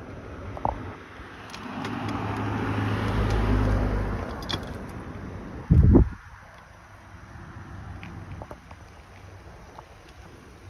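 A car drives past on the road, its engine hum and tyre noise swelling and then fading over a few seconds. Just before six seconds in there is a short, loud low thump, the loudest sound here.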